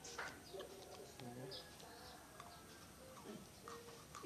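Faint eating sounds: a chocolate-coated Pocky biscuit stick bitten and chewed, with soft clicks and crinkles from its plastic pouch. A faint low wavering sound comes about a second in.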